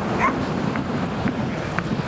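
A dog yipping briefly a few times over a steady rush of wind on the microphone.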